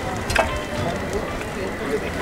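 Steady outdoor street background noise with faint voices in it, and a single sharp click about half a second in.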